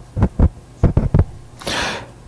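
A handful of dull, low thumps, about five in just over a second, then a short breathy hiss near the end.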